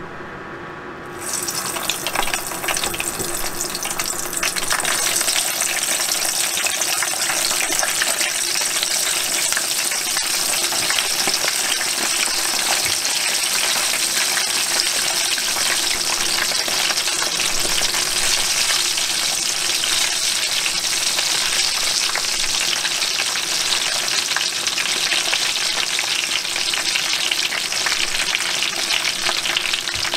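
Frozen nori-wrapped chicken pieces deep-frying in salad oil in a small pot: a dense, steady crackling sizzle that starts about a second in as the pieces go into the hot oil.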